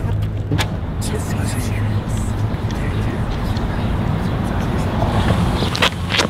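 Steady low rumble of a car engine running, with a few sharp clicks near the end.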